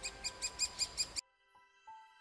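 Rapid series of high squeaky woodpecker calls, about eight a second, which cuts off abruptly just over a second in; then soft sustained music tones.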